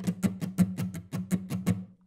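Acoustic guitar strummed with a pick in even strokes, about six or seven a second, with no accents: the flat way of playing the shuffle strumming pattern, shown as the wrong way. The strumming stops just before the end.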